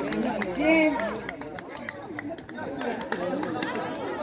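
Many voices of volleyball spectators and players talking and calling out over one another, with one loud shout a little under a second in.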